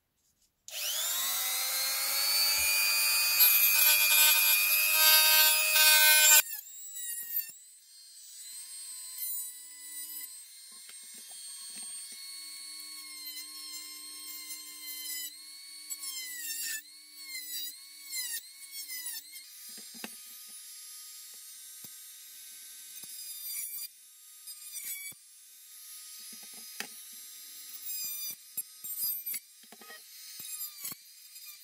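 Handheld electric rotary tool with a small saw attachment. Its high whine starts about a second in, rising in pitch as the motor spins up, and runs loudly for about five seconds. It then goes on more quietly while cutting into a plastic RC truck cab, the pitch dipping again and again under load, with short stops and clicks.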